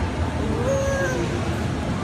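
A young child's voice: one drawn-out call that rises and then falls in pitch, lasting under a second, over steady background crowd noise.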